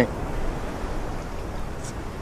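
Beach ambience: a steady, even rush of wind and ocean surf, deepest in the low end.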